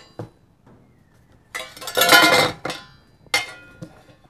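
Stainless steel Dixie mess tins knocking and scraping against each other and the camp cooker as they are handled and set down, with a metallic ring after the knocks. A short knock comes just after the start, the loudest clatter about two seconds in, and another ringing clank near the end.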